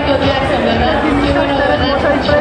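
Crowd chatter: several voices talking over one another.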